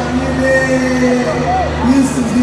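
An amplified voice holds one long, steady note through the stage sound system, with a brief upward slide near the end, over a steady low hum.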